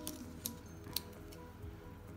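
Quiet background music, with two or three small clicks of a plastic nail tip being handled, about half a second and a second in.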